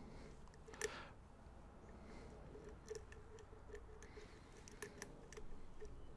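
Faint, scattered small metallic clicks of a hook pick lifting pins in a half euro-profile pin-tumbler cylinder held under tension, single-pin picking to win back a lost false set.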